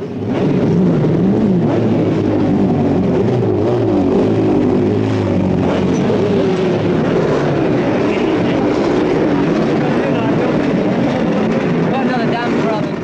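Racing motorcycle engines running and being revved, their pitch rising and falling in overlapping waves.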